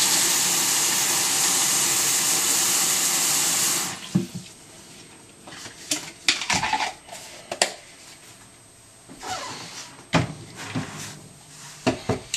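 Kitchen tap water running into a plastic cup of soaking sprouting seeds, shut off suddenly about four seconds in. After that come faint scattered clicks and knocks as the cup is handled.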